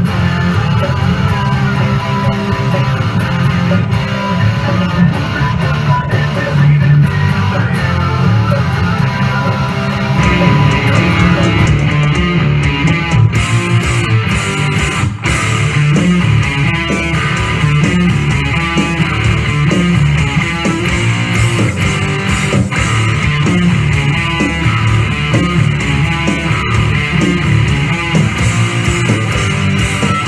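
Electric guitar music played continuously, with a strong low bass part underneath; the texture changes about ten seconds in.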